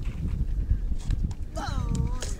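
Low, irregular buffeting rumble of wind on the microphone at an outdoor ground. About one and a half seconds in, a person's high-pitched shout starts, falling in pitch and then holding.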